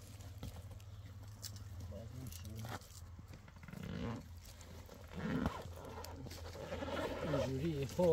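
Livestock bleating twice, short calls about four and five and a half seconds in, over a steady low hum, with voices starting near the end.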